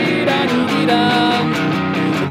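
Electric guitar with a little overdrive strumming a chord progression, with a man's voice singing held notes of the melody over it.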